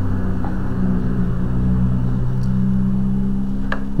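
A steady low hum of several fixed pitches holding through a pause in speech, shifting slightly about halfway through, with a short click near the end.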